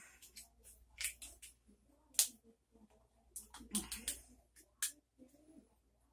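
Scattered light clicks and taps from hands handling things on a table, with one sharper click about two seconds in. A short closed-mouth 'mm-hmm' near the middle.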